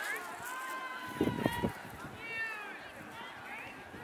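Distant shouting from players and sideline spectators across an open playing field, including one long held call in the first second or two. A few brief low thumps come about a second and a half in.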